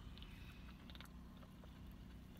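Near silence inside a car: faint sipping from a soda can, a few soft mouth ticks over a steady low hum.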